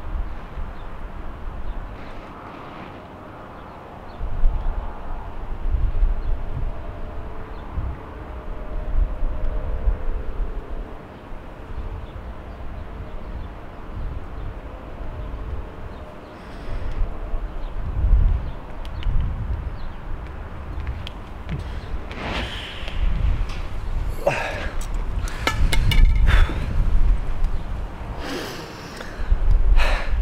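Wind gusting and rumbling on the microphone, rising and falling in waves. In the last several seconds a few sharp knocks and clicks stand out, the loudest sounds here.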